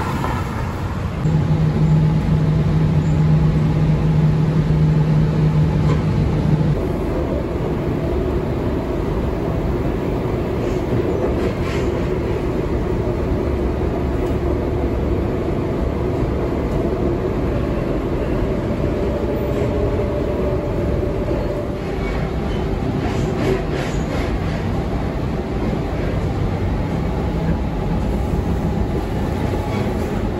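Inside a suburban electric train carriage: steady rumble with a faint whine from the motors. A louder low hum lasts for the first five seconds or so, and a few faint clicks come later.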